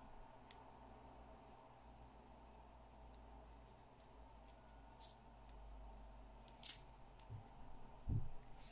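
Near silence: room tone with a few faint, short clicks, from a small plastic nail-art wheel of gold metal charms being handled.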